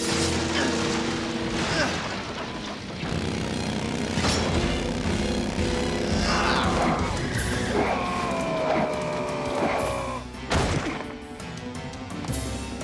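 Action-cartoon soundtrack: background music under fight sound effects, with energy-blaster zaps and sweeps and several sharp crashes and booms.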